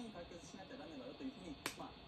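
A single sharp click about one and a half seconds in, over television talk playing in the background.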